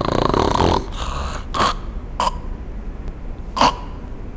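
A woman imitating a sleeper with obstructive sleep apnea: a loud rasping snore at the start, then three short snorts spaced out as the sleeper strains to breathe against a closed airway.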